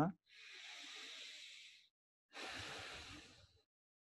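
A man taking a deliberate long, deep breath, a quiet breath in and then a breath out, each lasting about a second and a half with a short gap between.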